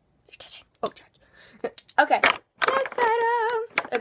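A girl's voice: faint whispery sounds at first, then a loud vocal burst about two seconds in and a held, wavering sung note lasting about a second.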